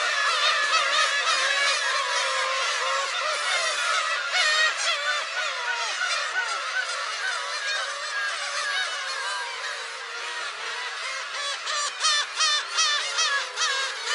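A large flock of black-tailed gulls calling together, many cat-like mewing calls overlapping into a dense, unbroken chorus. A run of louder, sharper calls stands out about twelve seconds in.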